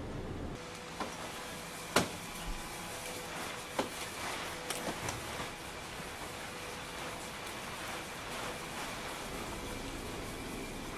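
Steady rushing air noise with a faint steady hum, broken by a few sharp clicks and knocks, the loudest about two seconds in.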